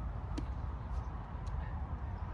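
Steady low outdoor background rumble, with a few faint clicks.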